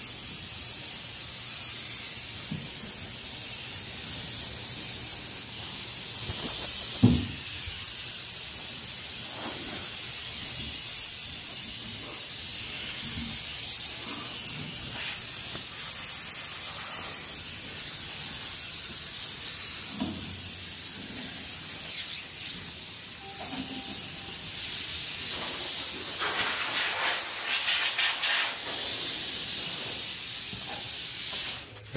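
Compressed air hissing steadily from an air blow gun, blowing dust off a bare truck cab during paint prep. A few light knocks, the sharpest about seven seconds in.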